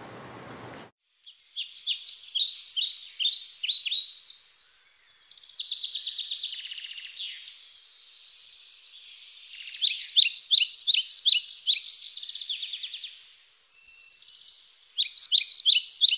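Songbirds singing: runs of quick, repeated high chirps and trills, broken by short pauses.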